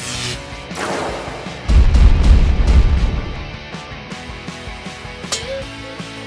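Cartoon battle sound effects over background music: a crackling electric zap at the start, then a loud, deep boom from just under two seconds in that dies away over about a second.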